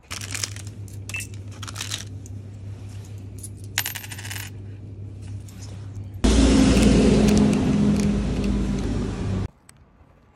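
A coin scratching the coating off a scratchcard on a hard counter. Scattered light scrapes and clicks over a low hum come first, then a loud, steady scrape for about three seconds in the second half that stops abruptly.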